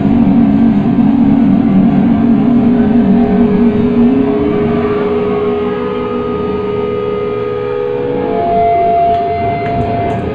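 Distorted electric guitar through an amplifier, sustaining loud held notes and feedback with no drums: a low wavering drone gives way after about four seconds to a long higher feedback tone, which jumps higher again near the end.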